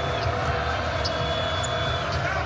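A basketball being dribbled on a hardwood court over steady arena crowd noise.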